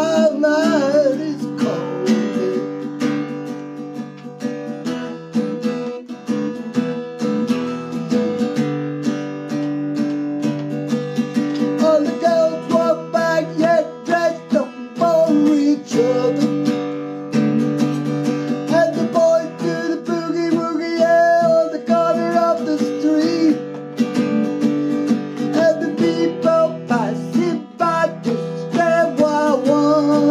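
Acoustic guitar strummed in a steady rhythm, with a man's voice singing over it in long, wavering phrases.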